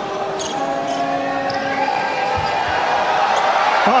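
Basketball bouncing on a hardwood court, with one low thump about two and a half seconds in. Behind it is steady arena crowd noise carrying several long held notes.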